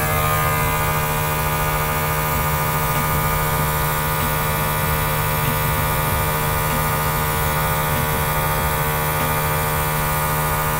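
Small airbrush compressor running with a steady hum, while air and ink spray from the airbrush in an even hiss.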